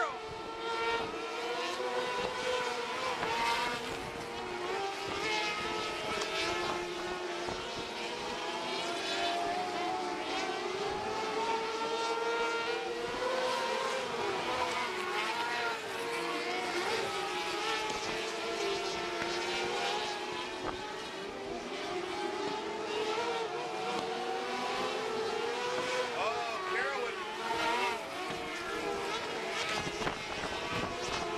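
Several small race-car engines running laps together on a dirt oval. Their overlapping pitches rise and fall as the cars accelerate down the straights and back off for the turns.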